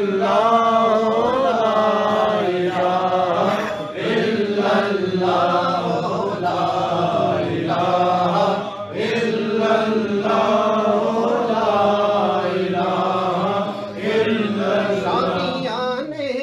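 A group of men chanting a devotional Islamic refrain together, unaccompanied, in repeated phrases of about five seconds with short breaks between them.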